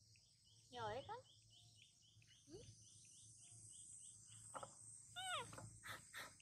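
Faint, steady high-pitched insect chorus with a regular chirping about four times a second. Short calls falling in pitch break in about a second in and again near the end.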